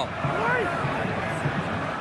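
Steady stadium background noise with a few faint, distant shouting voices in the first half-second or so.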